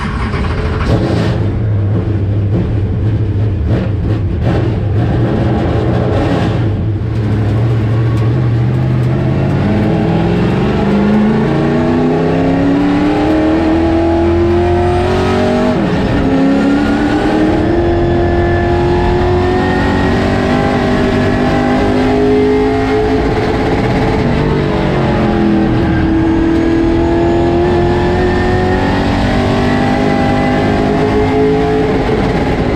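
Outlaw late model's crate V8, heard from inside the car: it runs low and steady at first, then climbs in pitch under hard acceleration about ten seconds in. The revs ease briefly twice, about nine seconds apart, as the driver lifts for the turns, then rise again and hold high.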